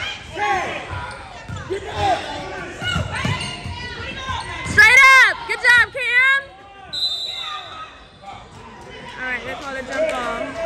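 Basketball dribbled and bouncing on a gym's hardwood floor during a youth game, under a mix of voices from players and spectators. A loud burst of high-pitched voices comes about five seconds in.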